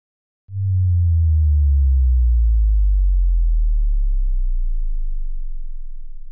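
A deep electronic bass tone, a downward sweep of the kind used as an end-card effect, starts about half a second in. It slides slowly down in pitch and fades over several seconds.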